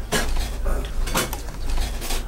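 A metal spoon clinking and scraping against a black soup pot as rice and soup are scooped, with a few sharp knocks.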